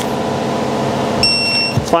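Digital torque wrench giving a single beep of about half a second just over a second in, the signal that the main stud nut has reached its set torque, about 40 ft-lb. A steady buzzing hum runs underneath, with a low thump near the end.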